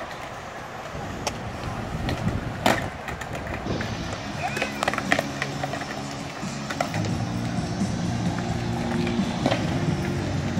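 Skateboard wheels rolling on a concrete skatepark, with several sharp clacks of boards hitting the ground, the loudest a few seconds in. Music comes in about four seconds in.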